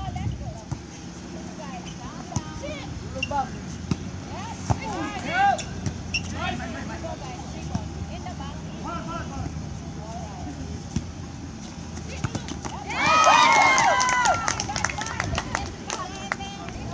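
Voices of volleyball players and onlookers calling out scattered short shouts during a rally, then a loud burst of several voices yelling together near the end.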